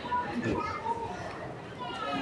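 Faint background voices from the gathered audience, a child's voice among them, heard while the preacher's microphone picks up no close speech.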